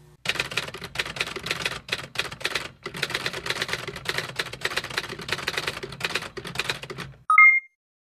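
Rapid typewriter-style clicking, a fast, uneven run of keystrokes lasting about seven seconds. It ends with a short, high ding, then silence.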